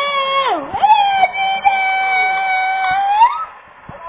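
Game show sound from a television: one pitched melodic line that dips in pitch, then holds a single long note for about two seconds, sliding up as it stops a little after three seconds in.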